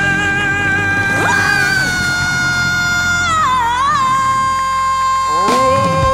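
A live rock-and-roll band playing under long, high belted vocal notes. The held note dips to a lower pitch about halfway through, and a second voice slides up into its own held note near the end.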